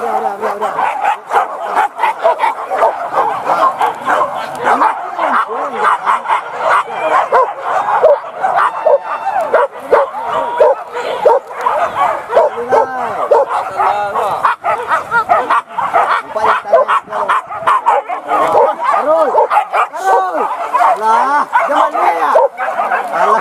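A pack of hunting dogs on the chase, yelping and baying without pause in many short, overlapping yelps.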